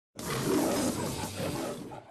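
A lion's roar in the style of the MGM logo roar. It is one rough roar lasting about two seconds, loudest near the start and fading toward the end.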